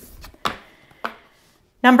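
Two short, light taps of an oracle card being picked up and flipped over on a wooden table, about half a second apart, followed by the start of speech near the end.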